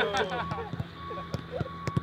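Men's voices counting exercise repetitions aloud as a group, with several sharp knocks of footballs being struck at irregular intervals of roughly half a second.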